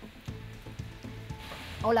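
Rain pattering into a puddle along a curb, with a low news music bed under it; a woman's voice begins just before the end.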